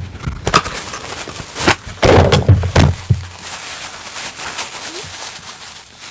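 Handling noise from a close microphone: fingers rubbing and tapping its mesh grille, with scattered clicks and a cluster of heavier knocks about two to three seconds in, then fainter rustling.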